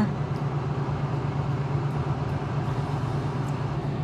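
A steady low hum with an even faint hiss over it: a machine running in the background.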